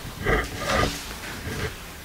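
A man's low, indistinct mumbling: a few short hesitant vocal sounds between words, mostly in the first second, with a low rumble under them.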